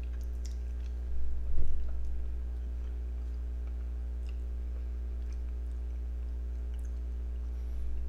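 Two people quietly eating ice cream: soft chewing and mouth sounds with faint clicks of plastic spoons, and a short louder mouth sound about a second and a half in. A steady low hum runs underneath.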